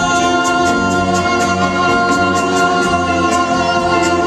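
Live band with a string orchestra playing a slow ballad: sustained held chords over a steady beat of about four ticks a second.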